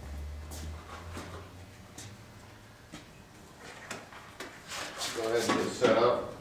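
Small items being picked up and set down on a sheet-metal workbench: scattered light clicks and knocks, busier toward the end.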